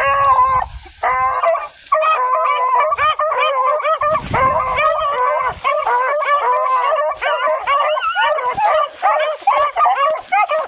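A pack of hunting hounds baying together in many overlapping voices. The calls come in short bouts with brief gaps over the first couple of seconds, then run on thick and unbroken.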